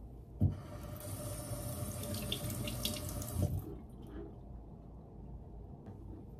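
Bathroom sink tap running for about three seconds, with a knock as it opens and another as it shuts off.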